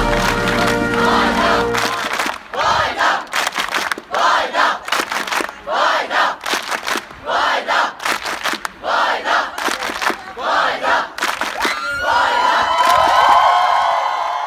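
A large crowd of students shouting together in short, repeated bursts, then one long loud cheer near the end. Music ends about two seconds in.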